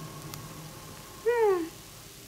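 One short voice-like call, falling in pitch and lasting under half a second, about a second and a half in, over a faint steady background hum.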